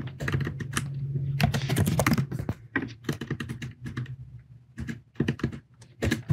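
Typing on a computer keyboard: irregular keystrokes, a quick run in the first two seconds, then slower, scattered keys.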